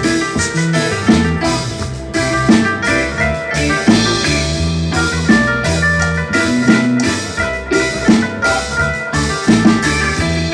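Live band playing an instrumental passage: a keyboard carries the chords and melody over a drum kit and a low bass line that changes note every second or so.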